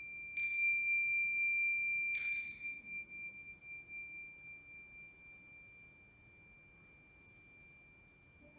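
A bell struck twice, about half a second and two seconds in, each strike sounding one high, clear ringing note that slowly fades away.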